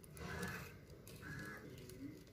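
Two faint, short calls from a distant bird, about half a second and a second and a half in, over quiet outdoor background.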